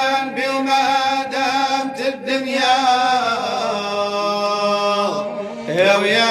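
Background music: an Arabic religious praise song for the Prophet Muhammad, a man's voice singing long, drawn-out notes over a steady low drone, with a new phrase starting near the end.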